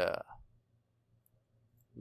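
A man's voice trailing off on a word, then near silence with a couple of faint, high clicks.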